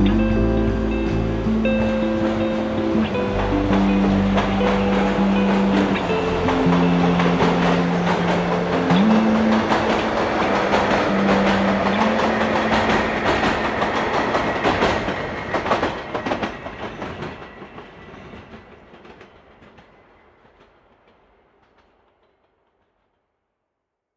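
The closing notes of a slow song give way to the sound of a train running on rails, its wheels clattering over the track, which fades away in the last several seconds.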